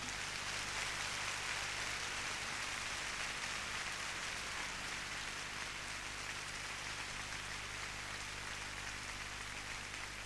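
Concert audience applauding, a dense, even clapping that starts as the music stops and eases off slightly over the seconds.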